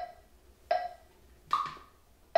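Electronic metronome clicking about 0.8 s apart in a three-beat pattern. The beat about a second and a half in is higher-pitched and marks the first beat of the bar.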